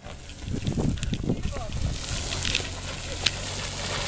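Nissan Xterra's engine running steadily as the SUV drives slowly up a muddy dirt road, with faint voices in the first second and a half and a sharp click about three seconds in.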